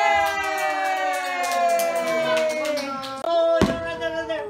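A long drawn-out voiced 'ohhh', held for about three seconds while slowly falling in pitch, with hand claps over it. After a break, a single sharp firework bang near the end.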